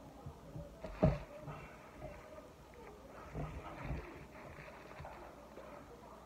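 A person chewing a mouthful of burger, with soft irregular mouth and swallowing noises. A single low thump comes about a second in.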